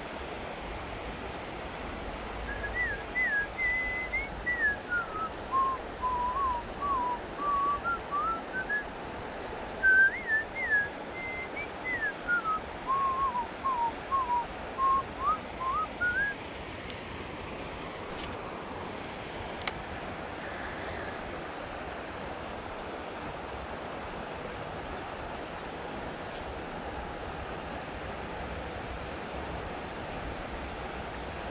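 A person whistling a tune: two phrases of short notes, each dropping from high to low and climbing back up, which stop about halfway through. Under it runs the steady rush of the river.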